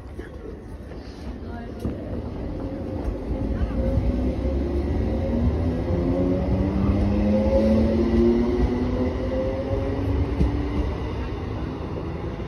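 ScotRail Class 318 electric multiple unit pulling away from the platform, with a deep running rumble. From a few seconds in, its traction motors whine with a slowly rising pitch as the train gathers speed, and the sound grows louder.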